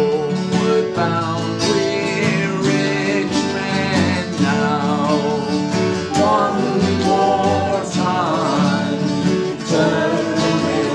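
Live music from a three-piece acoustic band: guitar plays a steady accompaniment under a wavering lead melody that slides in pitch now and then.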